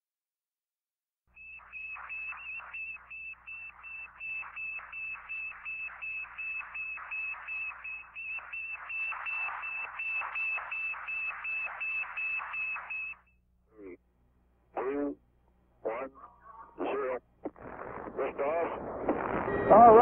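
Sputnik 1's radio beacon as received on the ground: a steady run of high beeps at one pitch, about two and a half a second, which stops suddenly after about twelve seconds. A few short separate sounds follow, then rising noise with a voice coming in near the end.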